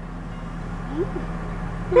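Car heard from inside the cabin while stopped, running with a steady low hum.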